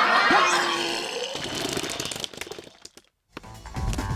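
A dense, noisy sound effect with a short tone fades away over the first two and a half seconds. After a moment of silence, background music with a low, steady beat starts about three and a half seconds in.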